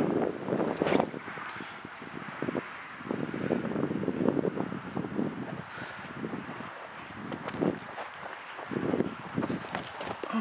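Outdoor wind gusting over the camera microphone, an uneven rushing noise that rises and falls, with a few sharp clicks.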